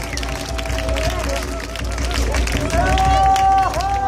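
Long, held vocal calls chanted in a Marquesan haka, each sustained tone sliding off in pitch at its end, with the strongest call about three seconds in.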